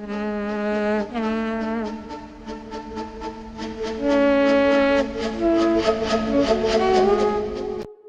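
Music playback of flute lines rendered from a recorded voice by DDSP timbre-transfer AI: held, slightly wavering notes that bend between pitches, layered in more than one part, with a light tick about four times a second behind them. It cuts off sharply just before the end.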